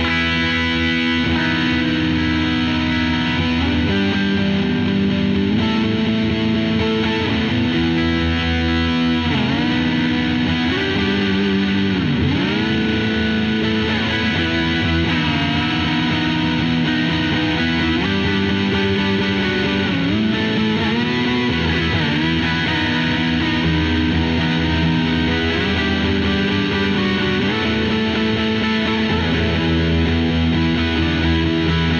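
Ibanez electric guitar played through an EarthQuaker Devices Plumes overdrive in its asymmetrical silicon-diode clipping mode, with delay and reverb into a clean amp. Sustained overdriven chords and notes ring with several dips in pitch. It is a Tube Screamer-like drive with some clean signal still heard in it.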